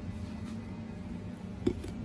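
Steady low background hum, with one short, light tap near the end as a kitchen knife's blade meets the spiny husk of a durian.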